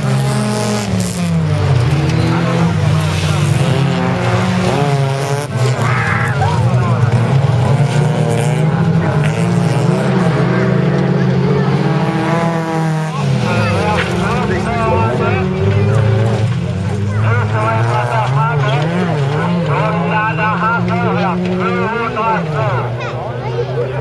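Several folkrace cars' engines racing flat out, revving and changing gear so that their pitch keeps climbing and dropping, several engines overlapping.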